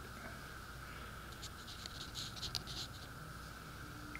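Faint light scratches and ticks, scattered through the middle seconds, over a steady background hiss.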